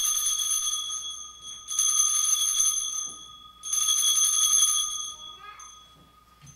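Altar bells rung three times at the elevation of the chalice during the consecration. Each ring is a jangling shake of small bells lasting about a second and a half, and the last one fades out about five seconds in.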